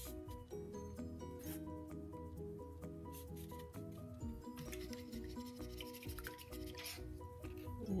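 Quiet background music: a light melody of short notes stepping up and down in pitch. A faint rustle runs for about two seconds in the middle.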